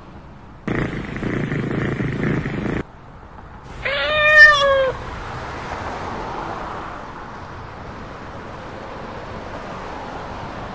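A domestic cat meowing once: a single drawn-out meow about four seconds in, rising and then falling in pitch, the loudest sound here. Before it, about two seconds of rough, low, steady noise.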